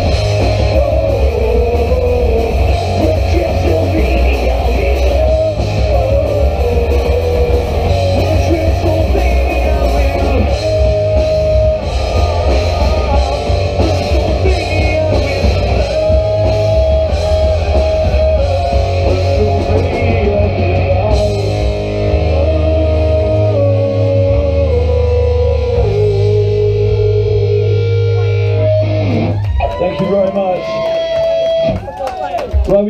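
Live horror-punk rock band: electric guitars, bass and drum kit playing the last stretch of a song. About two-thirds of the way through, the dense drumming thins out and the band holds ringing chords. The chords ring on until the song ends near the close.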